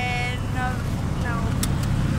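Short bits of voices, one held vocal note at the start, over a low steady rumble.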